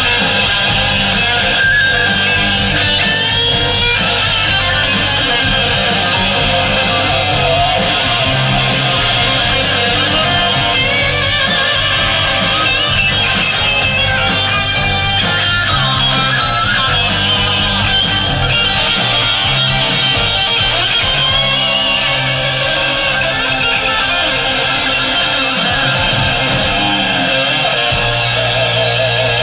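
Electric guitar playing loud rock parts at a steady level, over changing bass notes.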